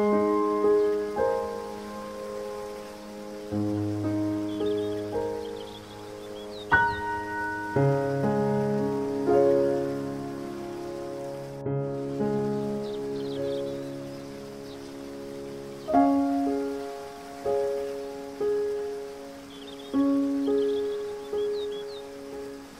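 Slow, gentle solo piano music: soft chords and single notes struck every second or two and left to ring and fade. A faint, steady rain-like water noise runs beneath it.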